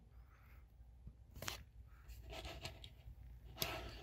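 Faint handling sounds of a 1:64 die-cast metal model car being picked up and turned by hand: a light click about one and a half seconds in, soft rubbing and scraping, and a short louder rustle near the end.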